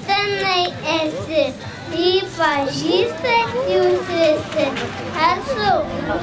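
A young boy speaking into a handheld microphone in a high child's voice, his pitch rising and falling in short phrases.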